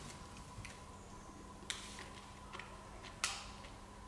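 Quiet chewing of a crunchy chocolate cookie: a few soft, sharp crunches, one about halfway through and a clearer one late on, over a faint steady hum.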